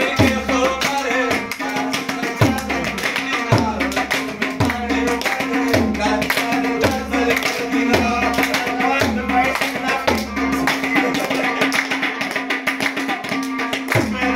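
Pashto folk music led by a tabla: deep bass strokes with a sliding pitch come about once a second, with quicker treble strokes under a steady drone and a wavering melody line.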